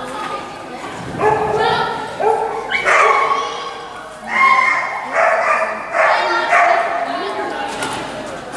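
Miniature schnauzer barking in a rapid series of high, drawn-out yips while running, mixed with a handler's shouted cues.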